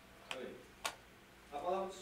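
A man's voice during a pause in reading: a brief murmur, a single sharp click, then he begins a word near the end.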